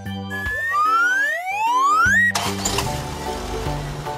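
Light background music with a cartoon sound effect: a rising whistle-like glide lasting under two seconds that cuts off suddenly, followed by a rushing noise under the music.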